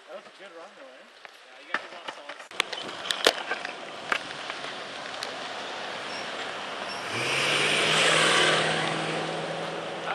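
Longboard wheels rolling fast on asphalt with wind rushing past, the noise building as the board picks up speed and joined by a steady low hum about seven seconds in. A few sharp clacks and knocks come before it, about two to three seconds in.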